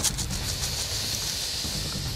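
Steady background noise with no speech: a low rumble under an even hiss, holding level throughout.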